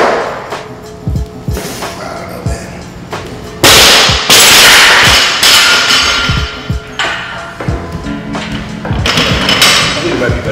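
Background music with a steady beat. A barbell loaded with bumper plates is jerked overhead and then dropped onto the gym floor, making a loud crash about three and a half seconds in that lasts a couple of seconds.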